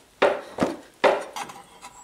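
A 4 mm steel strip being pressed by foot around wooden bending forms, knocking and scraping against the wood: two sharp knocks, about a quarter second and a second in, each fading quickly, with a lighter one between.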